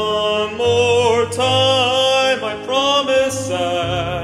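Male singer's pop vocal, held and sliding notes stretched across the line, over a backing track.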